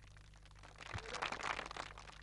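Quiet stretch with a faint steady low hum; from about a second in, soft irregular rustling and crunching noises come and go.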